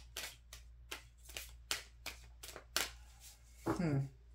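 A deck of cards shuffled by hand: a quick, irregular run of short card slaps, several a second, that stops about three seconds in.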